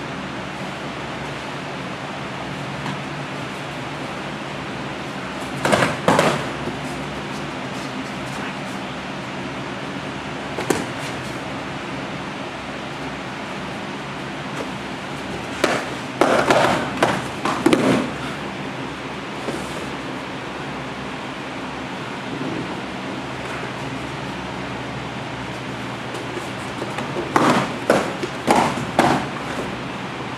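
Fighting sticks clacking together during sparring, in short flurries of sharp strikes: one a few seconds in, a longer run in the middle and another near the end, over a steady hum.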